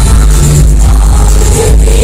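Loud live dance-pop music played over a concert PA, with a heavy, steady bass.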